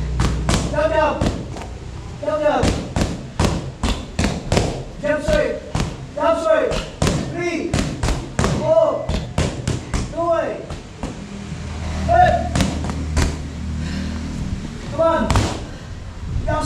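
Boxing gloves striking handheld focus mitts in quick combinations, a sharp smack on each punch, about two a second.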